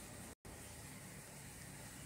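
Faint, steady background hiss of room tone, broken by an instant of dead silence about half a second in.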